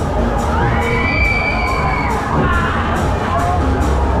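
Riders on a spinning fairground thrill ride screaming and shouting, with one long high scream held for about a second and a half, then shorter cries. Loud music with a steady beat and heavy bass plays underneath.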